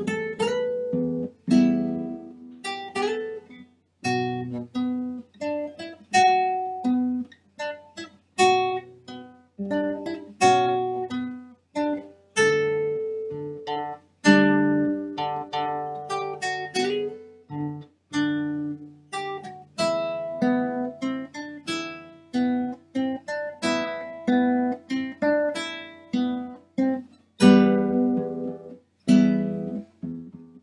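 Solo nylon-string classical guitar played by hand: plucked notes and chords that each ring out and fade, in a steady flow of phrases with a few short breaks.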